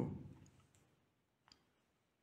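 Near silence: the last word of a man's voice dies away in a reverberant church over the first half second, then one faint click about one and a half seconds in.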